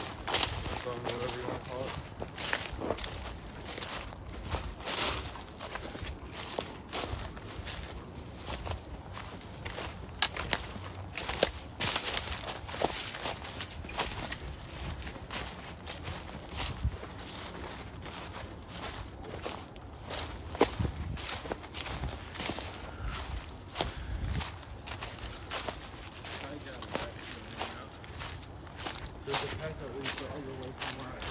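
Footsteps crunching and rustling through dry fallen leaves and twigs on a woodland path, an irregular run of crisp crackles as someone walks.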